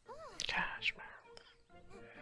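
Quiet soundtrack of an animated cartoon playing in the background: a character's voice gliding up and down in pitch, followed by a few short, high sound effects in the first second.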